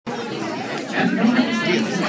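Indistinct chatter: several people talking at once in a large room.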